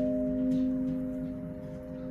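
A vinyl record playing a slow, soft instrumental theme: one held chord, struck just before, fades gradually, with a faint crackle of clicks beneath it.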